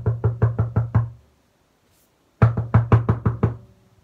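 Knocking on a wooden door, a sound effect: two rounds of about seven or eight rapid knocks, each round about a second long, with a short pause between.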